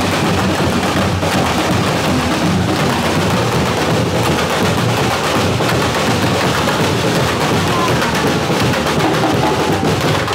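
A street drum corps playing: many bass drums and snare drums beaten together in a loud, dense, unbroken rhythm.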